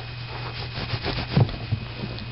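Fingers scratching and rubbing on a fabric bedspread in a quick run of scratchy strokes, with a louder low bump about halfway through.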